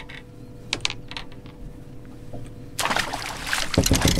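A few light clicks and knocks on the boat deck, then, nearly three seconds in, a loud second-long burst of splashing as a hooked smallmouth bass is handled at the side of the boat.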